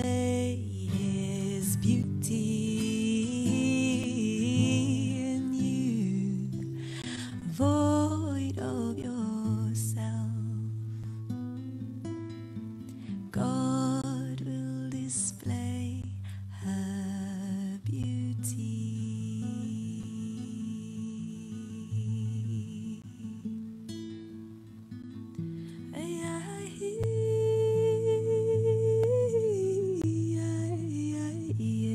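A woman singing a slow melody to her own acoustic guitar, with a softer stretch a little past the middle and a louder held note near the end.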